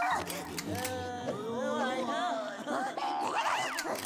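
Cartoon characters talking in wordless gibberish, rising and falling exclamations with no real words, with a few sharp clicks between them.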